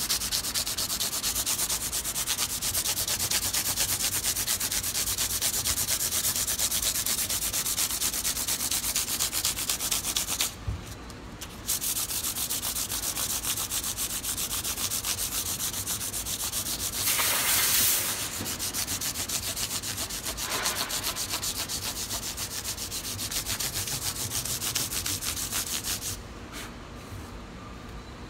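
400-grit sandpaper on a sanding block rubbing back and forth in quick, rhythmic strokes along the edge of a guitar fretboard, rounding off the square edges of the fret ends. The strokes pause briefly about ten seconds in, get louder for a moment around seventeen seconds, and stop a couple of seconds before the end.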